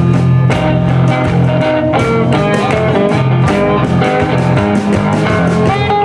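Live blues band playing an instrumental passage: electric guitar over upright double bass and a drum kit keeping a steady beat.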